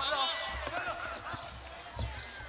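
Several voices calling and shouting at a distance, overlapping, loudest in the first second, with a few short thuds among them.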